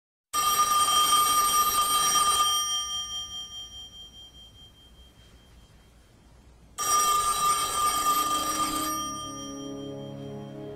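A telephone bell rings twice, each ring about two seconds long with a fading tail, the second about four seconds after the first. Low steady tones come in near the end.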